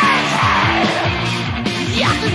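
Heavy metal band playing on a 1992 demo recording: distorted guitars, bass and drums, with a high lead line that slides up and down in pitch over the dense backing.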